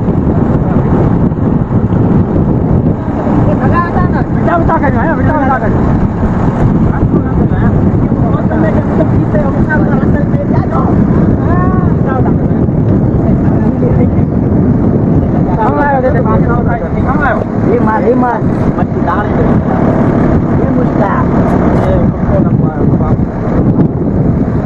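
A fishing boat's engine running with a loud, steady low rumble. Men's voices call out over it several times.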